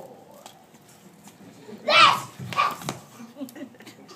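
A child imitating a dog's bark: one loud bark about two seconds in, followed by two shorter ones.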